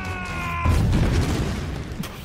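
Movie fight soundtrack: a held musical note, then about two-thirds of a second in a sudden loud boom of a hit, with a rumbling crash that fades over the next second.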